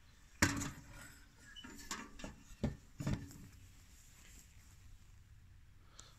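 Handling knocks of a small steel wood stove, built from a helium tank, as it is turned and stood on end on a wooden bench. There is a sharp knock about half a second in, then several lighter knocks and clatters over the next three seconds.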